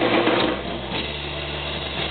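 A live rock band's last notes ringing out through the amplifiers as the song ends: a steady low bass drone with a buzzing, distorted guitar noise.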